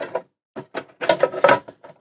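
Hard knocks and clicks of a diesel heater's two-part casing being worked loose and lifted off by hand, a few near the start and a quicker run from about a second in, the loudest about one and a half seconds in.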